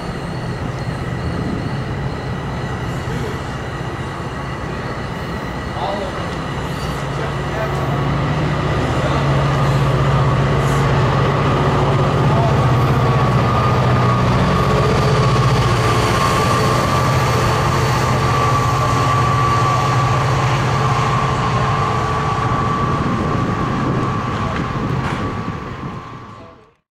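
NJ Transit bilevel commuter coaches rolling past at close range: a steady rumble of wheels on rail with a low hum, growing louder about eight seconds in.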